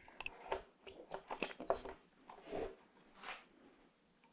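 Faint clicks and rustles of a plastic OBD connector and its cable being handled and plugged into an OBD port. The sounds come in a cluster over the first two seconds, with a couple of softer ones later.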